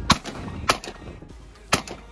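Shotgun fired three times in quick succession at flying pigeons. The first two shots come about half a second apart and the third about a second later.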